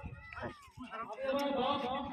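A dog gives a short, high whine that falls in pitch, over the voices of people around it.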